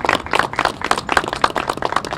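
A small group of people applauding, with many quick, uneven hand claps overlapping.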